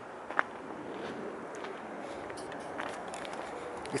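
Quiet footsteps crunching on gravel, with a brief click about half a second in.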